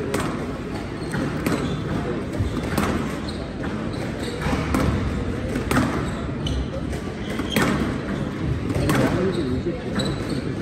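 A squash rally: the ball is struck by rackets and smacks off the court walls roughly once a second, with short squeaks of court shoes on the floor between the shots.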